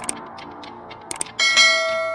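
Logo-intro sound effect: light clicks over a soft music bed, then a bell-like chime struck about one and a half seconds in that rings on and slowly fades.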